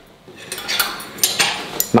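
Metal knife and fork handled over a plate: a series of light clinks and scrapes against the plate and each other.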